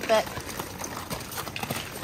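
Several children's shoes stepping on broken ice and crusty snow chunks on a sidewalk: a quick, irregular run of crunching, crackling steps that the teacher likens to popping bubble wrap.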